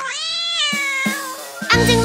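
A cat meowing: one long call falling in pitch over about a second. Children's-song backing music with a steady beat comes in near the end.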